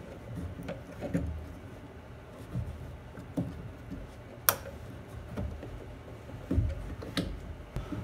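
Hands fitting an intake hose and its connector onto a plastic car airbox: scattered clicks, rubs and low knocks of plastic and rubber, with one sharp click about halfway through and a few dull thumps near the end.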